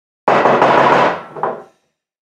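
A man's loud, drawn-out groan of frustration, starting suddenly and fading away over about a second and a half, with a short second push near the end.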